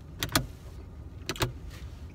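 Car interior ceiling-light switch clicking: two quick pairs of sharp clicks, about a second apart, over a low steady rumble in the car.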